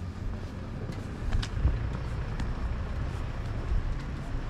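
Outdoor street ambience: a steady low rumble with a few faint clicks.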